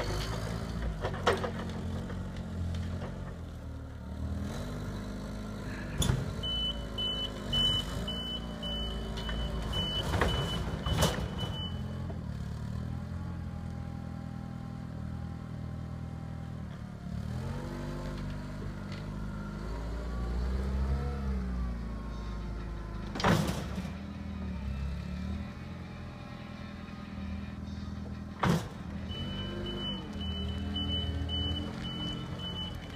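Linde H18 forklift engine running, rising and falling in pitch as it is revved through the middle stretch. A high pulsed warning beeper sounds for several seconds about six seconds in and starts again near the end, and a few sharp knocks ring out along the way.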